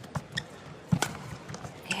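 Badminton rally: a few sharp racket strikes on the shuttlecock and players' footfalls on the court, the loudest strike about a second in.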